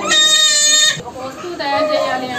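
A baby crying: one loud, steady wail about a second long, then a shorter, fainter cry near the end.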